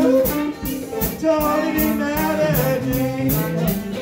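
Live blues band playing an instrumental passage between vocal lines: a drum kit keeping a steady cymbal beat about three strokes a second, electric guitar, and a held, stepping lead melody.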